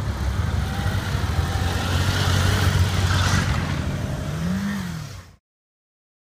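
Motorcycle engine running as the bike pulls away, its pitch rising and then falling near the end. The sound cuts off suddenly a little after five seconds.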